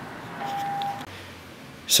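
A single electronic beep: one steady tone about half a second long.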